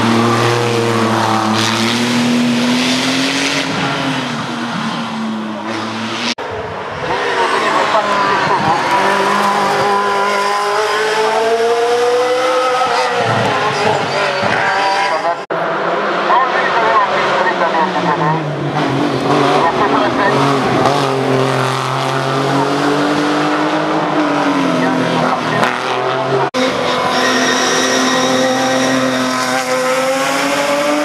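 Hill-climb race cars taking a hairpin one after another: each engine's pitch drops as the car brakes into the bend, then climbs again as it accelerates away. The sound breaks off abruptly three times, about six, fifteen and twenty-six seconds in, where the recording is cut between cars.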